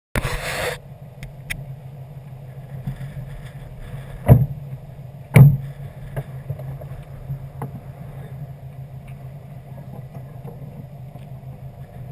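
2011 Subaru WRX's turbocharged flat-four idling steadily. A short rustle of handling at the start and two sharp knocks about a second apart, a little over four seconds in, which are the loudest sounds.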